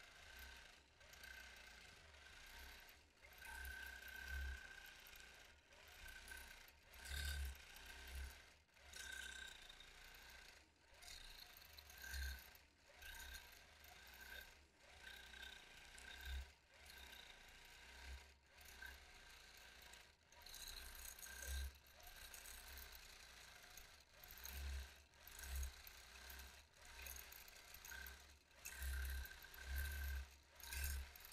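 Longarm quilting machine stitching through a quilt. It is faint and runs in short bursts that start and stop every second or so as it is guided across the fabric, with a faint whine that comes and goes.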